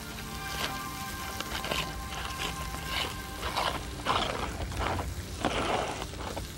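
Aluminium foil packet crinkling as hands unwrap it, in a few short rustling bursts through the second half, over soft background music with a held chord.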